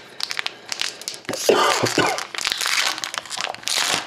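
Foil hockey-card pack wrapper crinkling and tearing as it is handled and ripped open, a dense run of sharp crackles.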